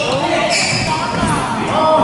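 Badminton rally: a sharp racket hit on the shuttlecock about a quarter of the way in, with short squeaks of court shoes on the wooden floor around it.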